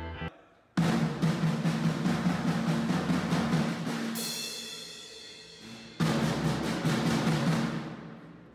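Drum kit played with sticks: a dense run of drum hits, a cymbal crash about four seconds in that rings and fades, then another loud burst of drumming at about six seconds.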